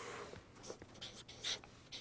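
Felt-tip marker writing on paper in several short, faint strokes.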